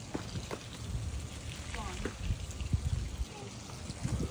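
Soapy water being emptied out of a shop vac's canister, with a few light knocks.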